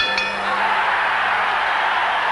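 Boxing ring bell struck twice in quick succession, ringing out over steady crowd noise: the bell signalling the end of the round.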